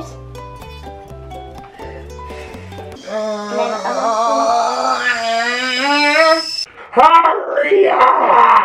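Background music with a steady beat, then an edited-in comedic sound effect for about four seconds: a wavering, sung-sounding tone over a high steady whine. It cuts off, and a child's voice follows near the end.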